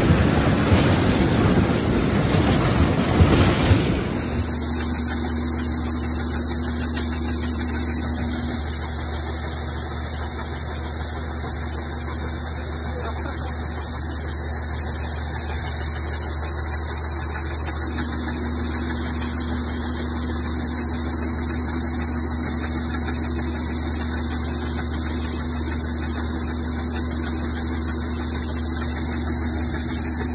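Claas Dominator 80 combine harvester at work in maize: for about four seconds a loud, rough noise of the running machine as the corn header feeds in stalks, then a steady diesel engine drone with a constant hum while the unloading auger pours shelled corn into a trailer.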